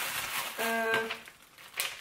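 Plastic packs of sliced cold cuts crinkling as they are handled and checked, with a short hummed 'hm' about half a second in and a light click near the end.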